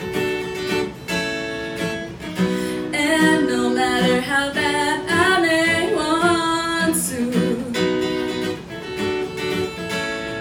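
A woman singing to her own strummed acoustic guitar, the chords carrying steadily under sung lines that rise and bend in pitch.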